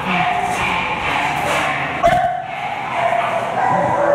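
Several American bully dogs barking in a kennel, a noisy, overlapping chorus that keeps up throughout.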